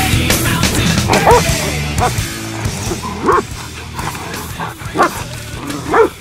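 Hunting dogs barking and yipping, a handful of short sharp barks spread through, the loudest near the end, over loud rock music.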